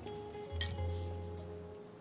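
One sharp metallic click about half a second in from the single-burner gas stove's valve and igniter assembly being handled, over quiet background music with held notes.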